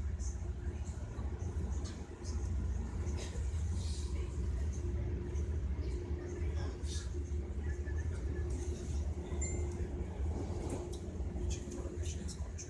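Passenger train running, heard from inside the carriage: a steady low rumble with a faint hum that comes and goes and a few light clicks and rattles.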